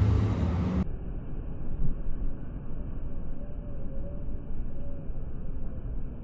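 Low, steady rumble of a car driving, engine and road noise. Just under a second in, the sound abruptly turns duller and more muffled and stays that way.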